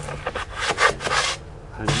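Plastic core liner tube scraping and rubbing as it is worked against a drilling rig's core barrel, a run of rough strokes lasting about a second.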